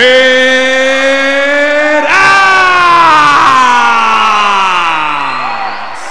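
A ring announcer's voice drawing out a fighter's name in two long held notes: the first steady for about two seconds, the second starting higher and sliding slowly down for nearly four seconds before fading out.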